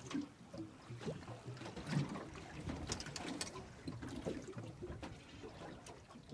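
Water lapping and sloshing against a small boat's hull, with scattered knocks and clicks.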